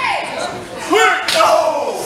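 Shouting voices, then a sharp smack about a second and a third in as a strike lands on a wrestler's body in the ring corner.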